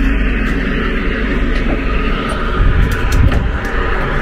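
Steady low rumbling noise, swelling a little past the middle.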